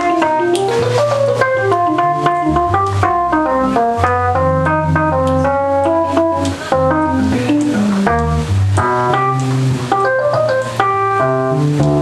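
Instrumental keyboard solo on an electronic keyboard with an organ sound: a quick, stepping melody of short notes over a low bass line, with sharp percussive hits running through it.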